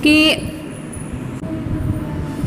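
A woman says one short word, then a low, uneven rumble of background noise carries on through the pause.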